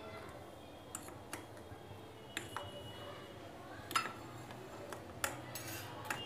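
Metal ladle stirring custard in a steel saucepan, giving a few light, irregular clinks and scrapes against the pan.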